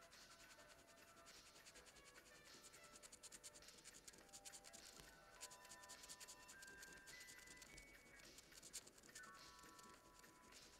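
A coin scratching the coating off a paper scratch card in rapid, faint strokes, over quiet background music with held notes.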